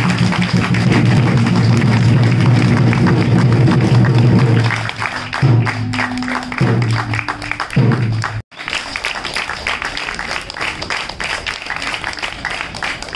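Audience applause over closing stage music: held low chords that change a few times and stop about eight seconds in, after a brief dropout. After that the clapping goes on alone.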